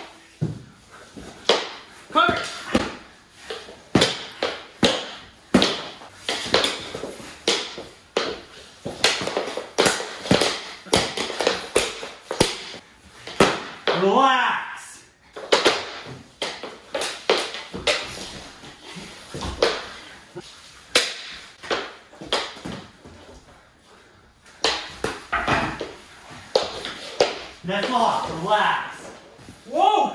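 Plastic mini hockey sticks clacking against each other and on a hardwood floor during a fast knee-hockey game: many sharp, irregular knocks, several a second, with a short vocal shout about halfway through.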